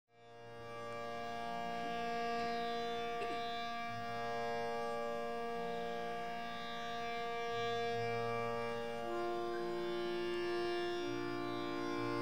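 Tanpura drone fading in, its plucked strings sounding steadily with rich buzzing overtones as the accompaniment for a Hindustani khayal. A harmonium joins with long held notes after about nine seconds.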